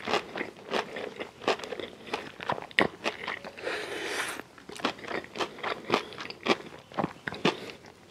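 Close-miked chewing of a mouthful of crispy fried chicken: irregular crunches of the breaded skin with sharp mouth clicks, and a longer wet, hissy smack about halfway through.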